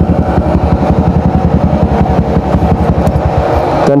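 Motorcycle engine idling steadily with a fast, even pulsing beat.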